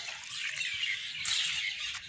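Small birds chirping, a series of short high chirps.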